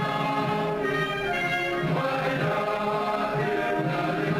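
Orchestral music with a choir singing in sustained, held notes.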